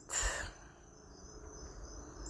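A short intake of breath in a pause between spoken phrases, then faint room noise with a thin, steady, high-pitched tone running under it.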